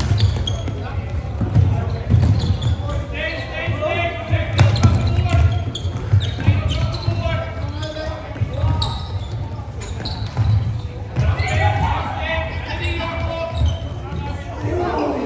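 Floorball play in an echoing sports hall: players' voices calling out in bursts, sharp clacks of sticks on the plastic ball, and low thuds of feet and play on the hall floor.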